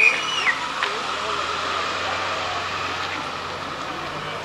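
Busy city street noise: a vehicle engine running with a steady low hum, under indistinct voices. A short high tone at the very start drops away within about half a second.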